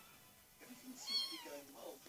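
Five-week-old kitten meowing once about a second in: a single high-pitched mew that falls in pitch.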